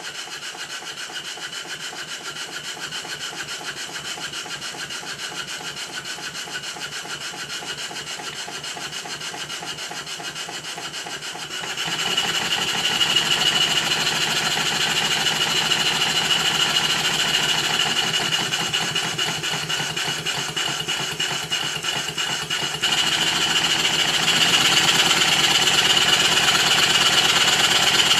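Stuart No. 9 model horizontal steam engine running on compressed air: a rapid, even beat of exhaust puffs and running gear over a steady hiss, growing louder about twelve seconds in and again near the end. The valve timing is retarded, so late admission leaves nothing to cushion the parts at the end of each stroke.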